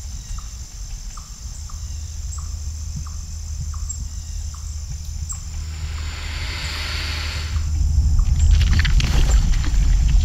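Outdoor river ambience from a drifting kayak: a steady low rumble of wind and water on the microphone that grows louder near the end, a faint high steady buzz, and faint short ticks about three times a second through the first half. A soft hiss swells briefly around six to seven seconds in.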